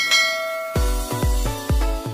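A bright notification-style bell chime rings once at the start and dies away. Then, a little before the one-second mark, an electronic outro beat comes in, with a deep kick drum about twice a second under pitched notes.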